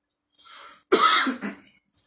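A man clears his throat with a single loud cough about a second in, after a short, quieter breathy sound.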